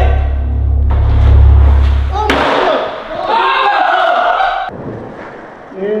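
Bass-heavy music cut off about two seconds in by a loud thud, a skateboard landing on a hardwood floor after a jump off a kitchen counter. Excited voices follow, and a second sharp thud comes near the end.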